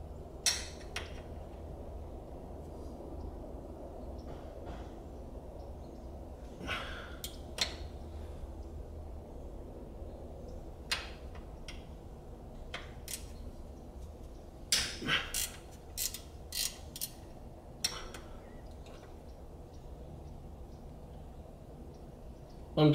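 Hand tools and metal hardware clicking and clinking while the transmission crossmember bolts are worked loose: scattered single clicks, then a quick run of five or six about two-thirds of the way in. A low steady hum runs underneath.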